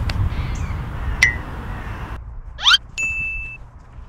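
Edited sound effects over a low outdoor rumble. A short ding comes about a second in, a quick rising whoosh at about two and a half seconds, and a held bell-like ding just after three seconds. The rumble cuts out a little past two seconds.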